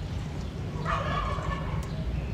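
A single short bird call about a second in, lasting under a second, over a steady low rumble.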